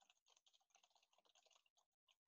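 Faint typing on a computer keyboard: a quick, dense run of key clicks that stops just before the end.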